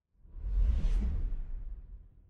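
Whoosh transition sound effect with a deep low boom under it, swelling quickly and then fading away over about a second and a half.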